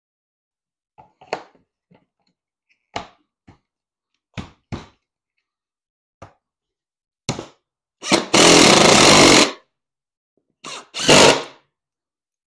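Several light knocks and clicks of hard plastic as a golf cart seat bottom is handled and fitted onto its frame. Then a cordless power driver runs loud for about a second and a half, driving a fastener into the seat frame, and runs again briefly near the end.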